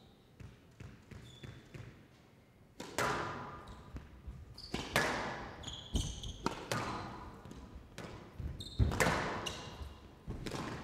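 Squash ball rally: the ball cracks off rackets and the glass-backed court walls about every second or two, each hit followed by a long echo in the hall. Shoes give brief high squeaks on the court floor between shots.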